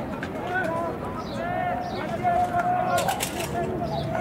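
Distant shouting voices on a football field, players and sideline team members calling out while the teams are set at the line. There is a short run of sharp claps or clicks about three seconds in.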